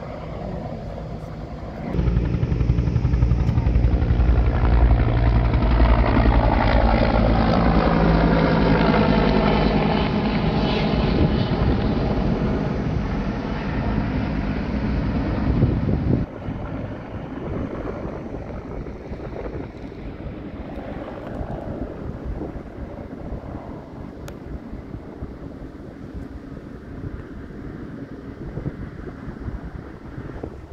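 Helicopter flying low nearby. Its rotor and engine come in loud and steady about two seconds in, and the tone sweeps slowly as it passes. About halfway through the sound drops abruptly to a quieter, rougher rumble.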